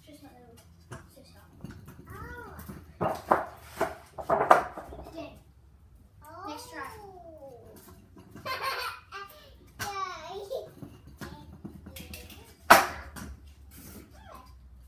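A young child's voice babbling and calling out in high, gliding tones, with no clear words. A few sharp knocks come in between, the loudest near the end.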